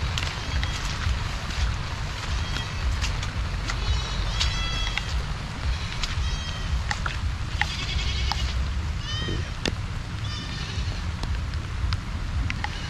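Short, high-pitched animal calls with a wavering pitch, repeated roughly once a second. Under them runs a steady low rumble of wind on the microphone.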